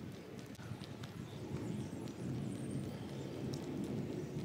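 Footsteps of a person walking on a concrete path, an irregular run of soft steps.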